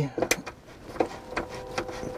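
A few light clicks and taps of a hand screwdriver working a screw in the plastic trim ring of an RV ceiling fan vent, with a faint steady hum in the second half.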